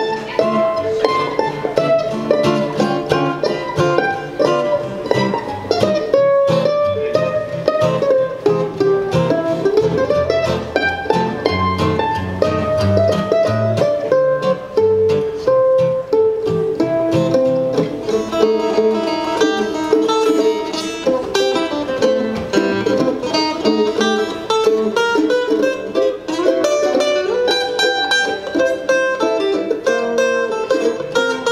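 Instrumental break of an acoustic country-style song, played live on mandolin and acoustic guitars: a picked lead line over strummed chords, with no singing.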